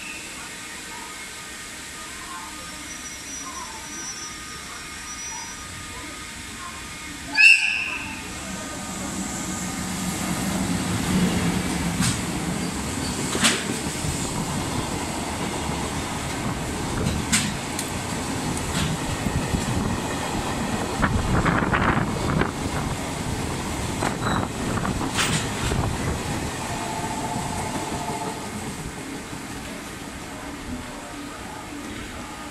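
EF64 1005 electric locomotive sounding a short, loud horn blast about seven seconds in, then running through the station hauling a freight train: the locomotive and a string of container flatcars rumble past with sharp clacks of wheels over rail joints, easing off near the end.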